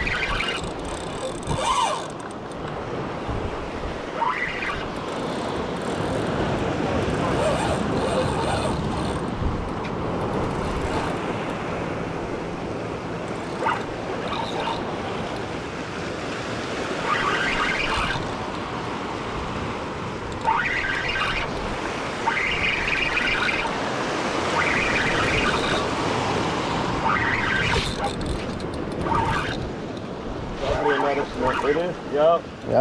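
Steady wind and surf noise over open sea water while a fish is reeled in. Short higher-pitched sounds break in now and then, more often in the second half.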